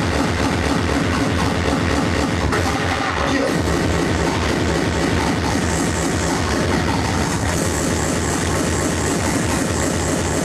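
Speedcore music played live by a DJ through a club sound system, driven by a fast, even kick drum.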